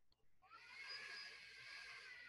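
A woman's slow, faint in-breath, taken as a deep meditation breath. It begins about half a second in and lasts about two seconds.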